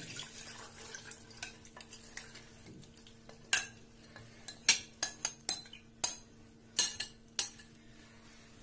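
Wet soaked poha and water pouring softly from a glass bowl into a stainless-steel mesh strainer. From about halfway through, a steel spoon scrapes the flakes out of the bowl, with a series of sharp clinks against the glass bowl and the steel strainer.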